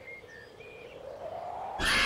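A short hush with a few faint, brief high chirps, then a swelling sound and, near the end, a sudden loud outburst of several voices yelling together.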